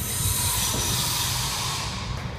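Wheels of a tall wheeled cabinet squealing and scraping on a concrete floor as two men push it, a hissing screech that starts suddenly and lasts about two seconds over a low rolling rumble.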